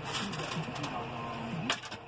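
John Deere 6150R's six-cylinder diesel idling at about 1000 rpm, heard from inside the cab, with a single sharp click near the end.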